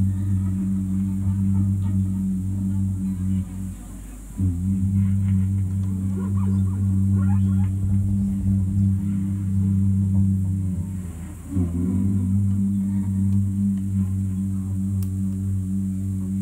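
Live ambient improvised music: a loud, steady low drone that drops away briefly about four seconds in and again near twelve seconds, then comes back. Faint wavering higher tones sound over it in the middle.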